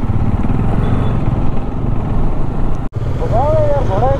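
Bajaj Dominar 400 single-cylinder motorcycle being ridden: a steady engine rumble mixed with wind noise on the microphone. The sound drops out for an instant about three quarters through, and a voice comes in near the end.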